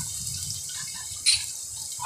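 Garlic and green chillies sizzling in oil in a clay handi as a wooden spatula stirs them. There is one short, sharp scrape of the spatula a little past halfway.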